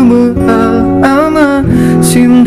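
A man singing a Turkish pop song, accompanying himself on an acoustic guitar.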